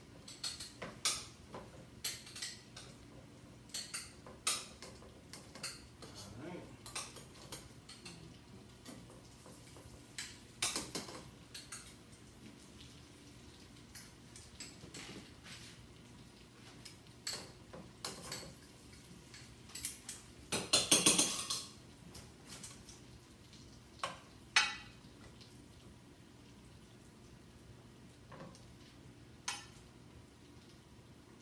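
Intermittent clinks, knocks and scrapes of cutlery and serving utensils against plates and pans as food is plated, with a louder, longer clatter about twenty seconds in.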